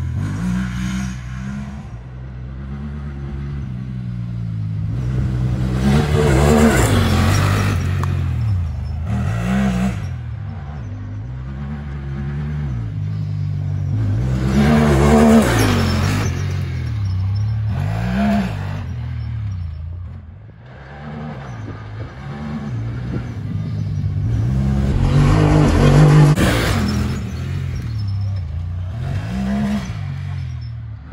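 Honda Talon 1000R side-by-side's parallel-twin engine revving up and down repeatedly as it is driven hard on dirt, with three louder swells about six, fifteen and twenty-six seconds in.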